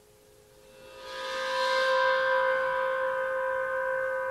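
Gong swelling up from near silence about a second in to a bright, shimmering ring, then sustaining as several steady tones, over a faint held low tone.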